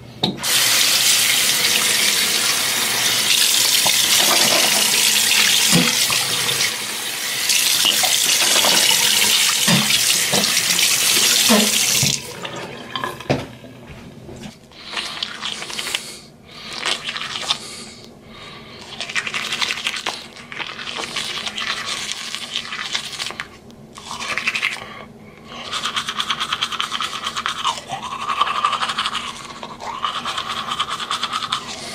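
A tap runs into the bathroom sink for about the first twelve seconds. After that a manual toothbrush scrubs teeth in short, irregular bursts with pauses between them.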